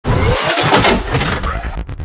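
A car engine revving, its pitch rising, then breaking into a quick stutter and dying away near the end.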